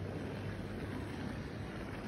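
Steady low hum and hiss of a large, almost empty airport baggage hall.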